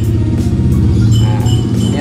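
A motor vehicle passing close by, its engine running steadily with an even low rumble, with music playing over it.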